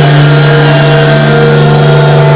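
A sustained, distorted electric guitar chord ringing out very loud over the PA between songs, with no drums.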